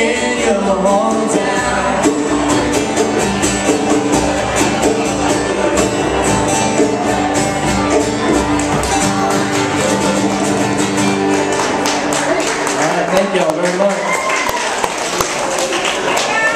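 A live country band plays the close of a song on acoustic guitars with vocals, the guitars strummed in an even rhythm. The music stops about thirteen seconds in, giving way to voices in the room.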